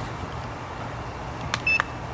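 A short electronic beep from the FPV flying gear near the end, just after a faint click, over a steady low hum.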